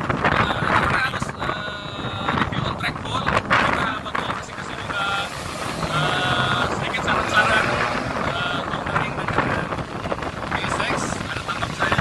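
A man talking, with wind buffeting the microphone throughout.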